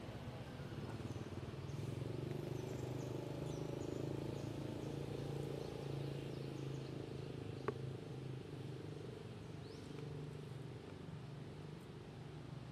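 Outdoor ambience: a steady low hum with faint, brief chirps from birds or insects, and a single sharp click about eight seconds in.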